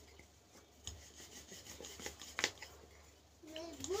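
Wooden rolling pin rolling out dough on a round wooden board: a soft rubbing with a few light knocks of wood on wood. A child's voice starts up near the end.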